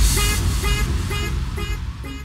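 Electronic dance music outro: a short horn-like synth stab repeating about four times a second over a low bass, fading out.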